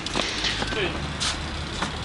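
Steady low rumble of a motor vehicle passing by, with faint voices and a few light clicks.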